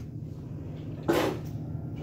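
A kitchen drawer or cupboard opened with a short clatter about a second in, over a steady low room hum.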